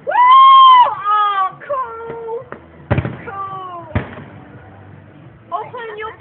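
Onlookers crying out wordless 'woo' and 'ooh' sounds at a fireworks display, starting with one loud, high, held cry, with two firework bangs about a second apart near the middle.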